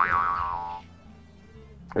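Cartoon "boing" sound effect: a twangy tone that wobbles up and down in pitch and fades out within the first second.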